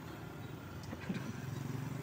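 Passing road traffic: a small motorcycle engine running as it rides by, with a car approaching, a steady low hum growing slightly louder toward the end.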